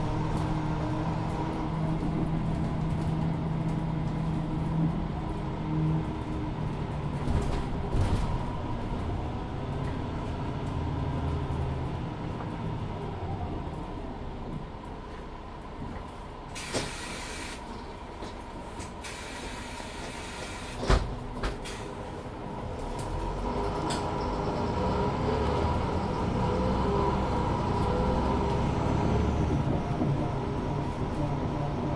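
A 2014 Mercedes-Benz Citaro 2 LE city bus heard from inside, its OM 936 h inline-six diesel running steadily, then easing off as the bus slows. In the quieter middle there are two bursts of compressed-air hiss and a sharp clunk, and near the end the engine pulls up again as the bus moves off.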